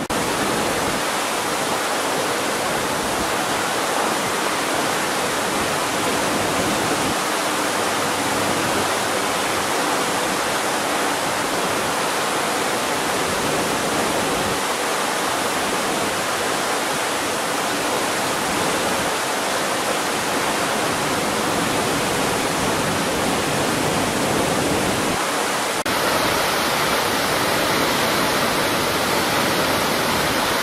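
Steady rushing water of a large waterfall, an even, unbroken noise that gets a little louder near the end.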